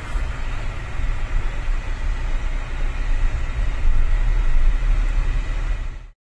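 Road and engine noise heard from inside a moving car: a steady, deep rumble with a hiss of tyres and air over it, growing a little louder in the second half.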